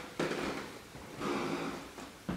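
A person's voice close to the microphone: two quiet murmured sounds, each under a second, the second one past the middle.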